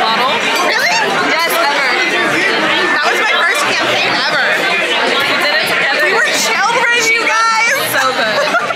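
Several voices talking over one another in loud, continuous chatter.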